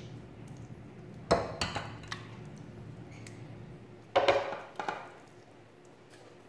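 Spatula knocking and scraping against a stainless steel pot and a glass baking dish while creamy chicken filling is spooned out, in two short bursts of knocks about a second in and again about four seconds in.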